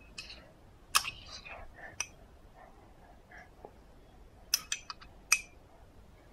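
Spoon-feeding sounds: a few sharp clicks and smacks with soft whispery mouth sounds. The first comes about a second in, a quick run of four follows about four and a half seconds in, and one more comes just after.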